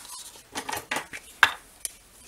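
Handling noise from paper and fabric craft materials: light rustles and taps, then a sharp plastic click about a second and a half in and a smaller one near the end as a glue stick is picked up from the tabletop.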